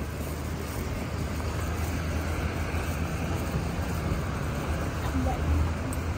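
Steady outdoor background noise: an even hiss with a low hum underneath, growing slightly louder toward the end.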